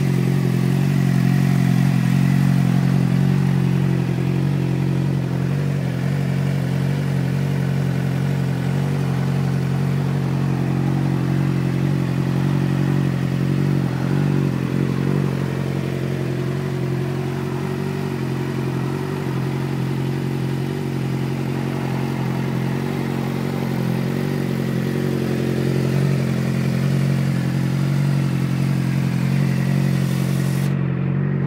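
2006 Suzuki GSX-R600's inline four-cylinder engine idling steadily, with no revving.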